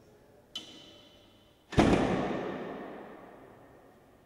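A door being shut: a sharp metallic click of the latch about half a second in, then a heavy thud about a second later that rings out in a long, slowly fading echo.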